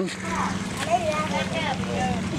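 Several people, children among them, talking in the background over a steady low hum.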